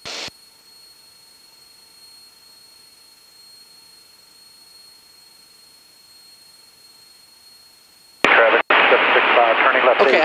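Aircraft headset radio and intercom feed between transmissions: a faint steady hiss with a thin high electrical whine, and no engine heard. A short squelch burst opens it, and a loud radio transmission cuts in abruptly about eight seconds in.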